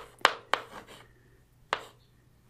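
Chalk tapping on a blackboard while writing: a few sharp clicks in the first half-second, then one more near the end.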